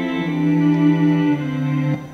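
A GarageBand string-ensemble loop playing back in held chords. The chord changes twice, and the music cuts off just before the end.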